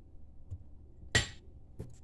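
A single sharp clink from a glass dessert cup about a second in, ringing briefly, followed by a fainter knock near the end.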